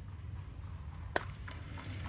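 A single sharp click about a second in, with a fainter one just after, from a hand handling a plastic digital timer, over a low steady hum.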